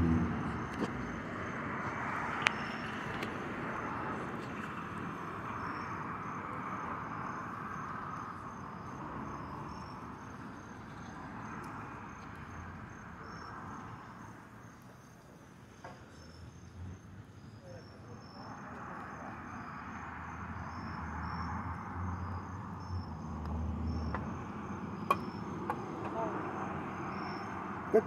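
Crickets chirping in a steady, evenly pulsed high trill over a faint outdoor background noise. A couple of sharp ticks stand out, about two and a half seconds in and again near the end.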